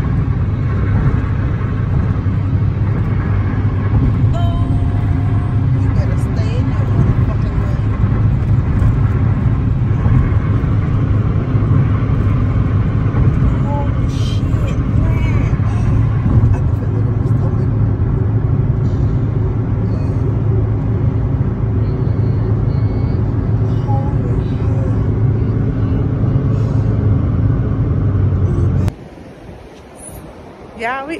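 Steady low road and engine rumble heard inside the cabin of a car moving at highway speed; it cuts off suddenly near the end.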